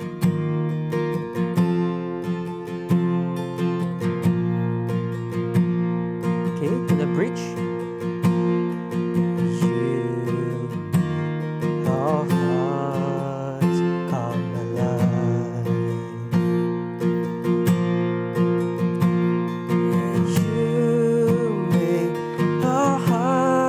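Acoustic guitar with a capo on the third fret, strummed steadily in 6/8 through G- and C-shape chords of the bridge, sounding in B-flat.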